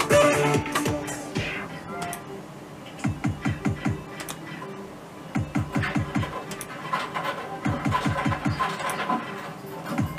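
Merkur Rising Liner slot machine's electronic game sounds: a short melodic jingle, then runs of quick descending blips repeating every couple of seconds as the reels spin.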